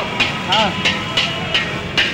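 A metal spatula scraping and striking a wok in a steady rhythm, about three strokes a second, as rice is stir-fried. A short rising-and-falling tone sounds about half a second in.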